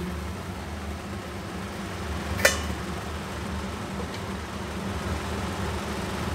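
A steel lid set down on a steel kadai with a single ringing clink about halfway through, over a steady low hum.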